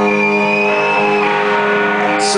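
Live rock music: a sustained guitar chord rings out, with a thin high tone held over it for about the first second.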